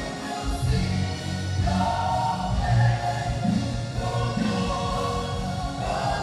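Congregation singing a gospel praise song together over steady musical accompaniment.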